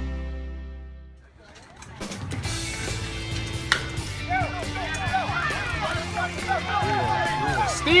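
Rock music fading out, then a single sharp crack of a baseball bat hitting the ball a little under four seconds in, followed by spectators yelling and cheering.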